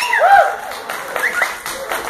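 Small audience clapping, with a few voices calling out in rising-and-falling whoops, loudest in the first half-second.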